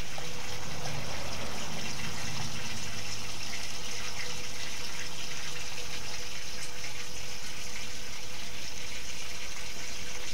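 Water from a garden hose running steadily into an old steel portable air tank, flushing the sludge out of it.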